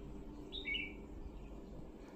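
A bird chirping faintly in the background: two short high chirps about half a second in, over a low steady hum.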